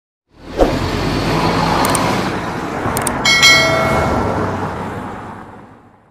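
Intro-animation sound effects: a rush of noise like passing traffic with a hit just after it starts, two short clicks, then a bright bell chime a little past the middle, the whole thing fading away toward the end.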